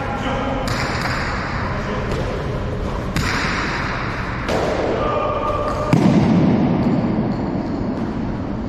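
Jai alai pelota hitting the fronton wall and cestas in sharp impacts, about a second in and again about three seconds in, each ringing on in the large hall. The heaviest thud comes about six seconds in, and players' calls sound between the hits.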